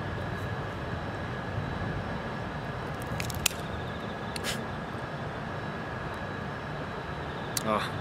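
Steady wind noise on the microphone, with a few small clicks and one sharp snap about three and a half seconds in, as a cigar's cap is snipped off with a cutter.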